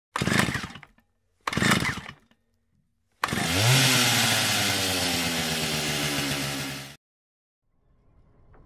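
Chainsaw sound effect: two short bursts, then the saw runs at a steady pitch after a quick rise, for about four seconds, before cutting off suddenly.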